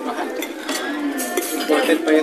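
Cutlery and dishes clinking on a dining table: several light clinks, with people's voices in the background.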